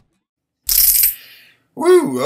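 Music cuts off, and about two-thirds of a second later comes a short, hissy clatter lasting about half a second and fading out. A man starts speaking near the end.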